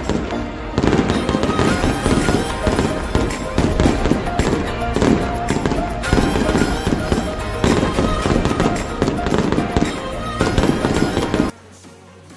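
Loud channel-intro music packed with rapid percussive hits and bangs, cutting off abruptly about half a second before the end.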